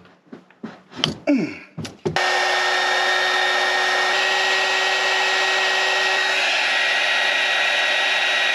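A few light knocks and clicks, then about two seconds in an electric heat gun switches on and runs steadily, a rush of blown air with a steady whine in it. It is shrinking heat-shrink tubing over a freshly crimped battery-cable lug.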